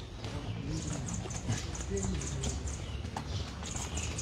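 Footsteps of someone walking on a paved lane, an even run of about three steps a second, with indistinct voices in the background.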